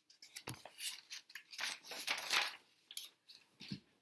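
Pages of a picture book being turned and handled: a string of short paper rustles and swishes, with a soft low thump about half a second in and another near the end.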